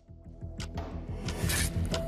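Background music fading in, with a held tone over a low, pulsing beat and sharp percussive hits.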